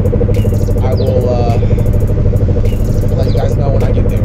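Steady low engine and road drone inside the cabin of a moving 1991 Mitsubishi VR-4.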